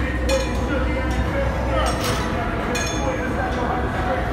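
Metal gym equipment clinking as a cable machine is worked: about three sharp metallic clinks with a short ring, over a steady low hum and background voices.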